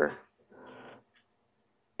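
A woman's spoken word trailing off, then a brief soft breath about half a second in, followed by a pause of near silence.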